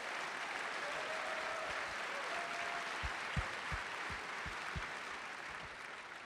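Audience applauding steadily, tapering off toward the end, with a handful of soft low thumps about halfway through.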